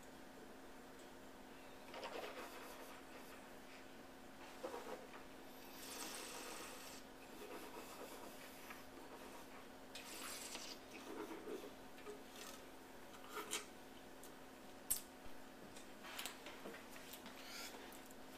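Faint, scattered handling sounds of wine tasting at a table: sipping and swallowing, a glass set down, small clicks, and a cloth rubbing near the end. A low steady hum runs underneath.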